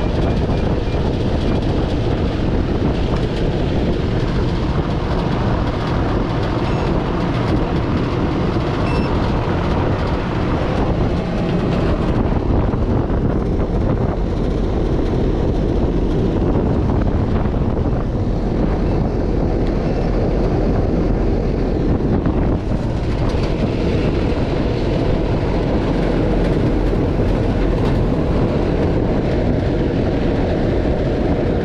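Outdoor air-conditioning condensing unit running, its fan and compressor giving a loud, steady rush of air over a low hum, with refrigerant gauges connected while the system settles.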